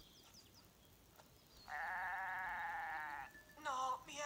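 A goat bleating: one long, quavering bleat of about a second and a half, starting a little before halfway in.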